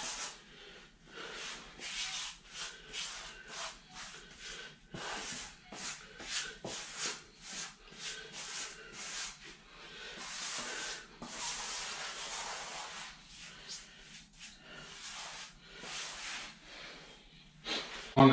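Soft-edged rubber grout float scraping thick pre-mix grout across hexagon floor tiles in repeated short strokes, with a longer run of steady rubbing about ten seconds in.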